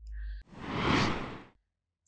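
Whoosh transition sound effect, a rush of noise that swells and fades over about a second, with a short low hum just before it.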